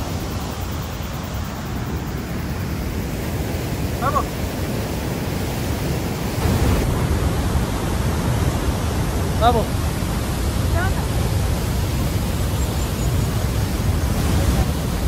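Steady rushing of the Waikato River's whitewater at Huka Falls, a deep, even wash of noise. A few short voice sounds break in near the middle.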